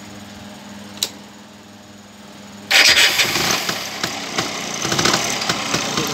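A single sharp click about a second in, then an add-on electric starter motor suddenly kicks in, cranking a Rajdoot 175's two-stroke single-cylinder engine through its exposed chain and sprocket drive with a loud, irregular clatter.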